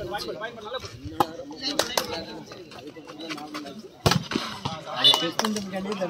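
Voices of players and onlookers across an outdoor court, broken by a few sharp smacks. The loudest smack comes about four seconds in.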